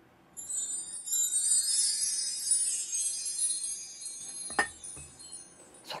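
A high, shimmering wind-chime-like tinkle lasting about four seconds, then two light clinks near the end.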